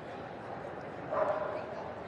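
A dog gives one short, high yelp a little after a second in, over the steady murmur of an arena crowd.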